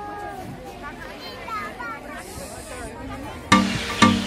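Faint, indistinct voices of people talking. Background music with a strong beat cuts in about three and a half seconds in.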